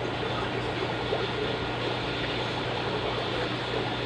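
Steady hiss of running and bubbling water with a constant low hum: the background of a fish room full of running aquarium sponge filters and air pumps.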